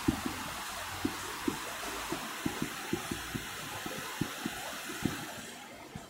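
Steady hiss from an open handheld microphone, with scattered soft low knocks from handling, dropping away shortly before the end.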